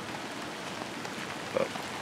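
Steady rain falling, pattering on an umbrella held over the recorder.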